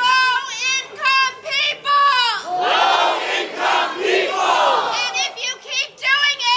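A crowd of protesters chanting, led by a woman shouting loudly close by: a run of short, high-pitched shouted syllables, then a stretch of more mixed crowd voices, then more shouts near the end.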